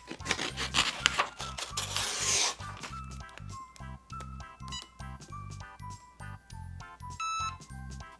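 Scissors cutting a sheet of sublimation transfer paper, with paper rustling and handling, for about the first two and a half seconds, over background music with a steady beat. After that only the music is heard.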